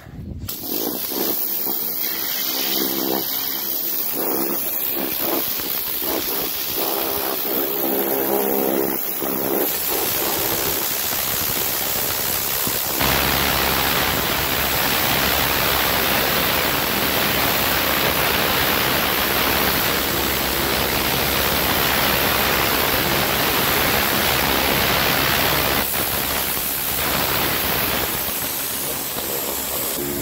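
Pressure washer running steadily, its pump motor humming under the hiss of the water jet blasting dirty wooden decking. About 13 seconds in the sound grows fuller, with a deeper hum and more hiss.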